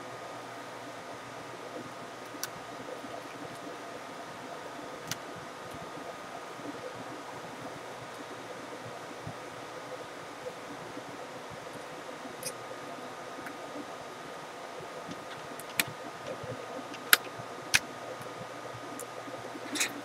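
Scattered light clicks and taps from a small screwdriver and hands working on a laptop's screen panel and lid, over a steady background hum with faint tones. Three sharper clicks come close together near the end.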